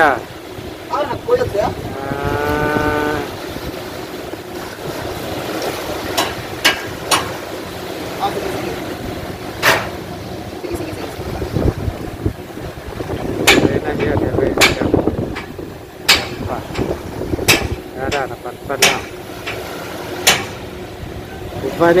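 Engines of a bow-ramp ro-ro vessel running as it comes in toward the shore: a steady low rumble under wind noise on the microphone. A held pitched tone sounds about two seconds in, and several sharp clicks and scattered calling voices stand out.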